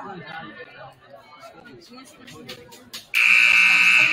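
A gym scoreboard buzzer sounds loudly for about a second near the end, starting abruptly over crowd chatter. With the game clock still at 8:00 in the fourth period, it marks the end of the break before the quarter starts.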